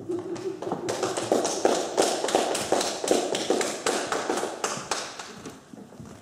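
Scattered applause from a small audience: irregular handclaps, several a second, thinning out near the end.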